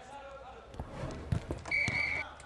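Footballs being kicked and bouncing, a few sharp thuds, with faint voices of players behind. A short steady high tone sounds near the end.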